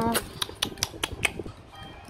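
A man's hummed 'mmm' of tasting ends just after the start. It is followed by a quick run of light clicks, about five a second, from pretend eating of a plastic toy fish; the clicks fade out past the middle.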